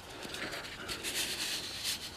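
Paper and cardboard rustling and sliding as a folder of printed sheets is opened by hand, with a few brief scrapes and the loudest one near the end.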